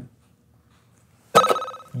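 A quiz-show ring-in bell sounds once, about one and a half seconds in, after a pause of near silence. It is a sudden bright ring that dies away over about half a second.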